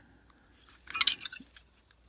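A short burst of metallic clinks and scraping about a second in, as a lighter's fuel insert and its metal case are handled together.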